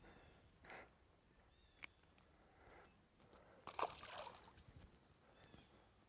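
Near silence with faint handling noises and a tiny click, then a brief soft splash a little past halfway as a small fish is dropped back into the water.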